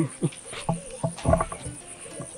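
Insects trilling steadily in a high, evenly pulsing tone, with a few short dull thumps over it, the strongest about halfway through.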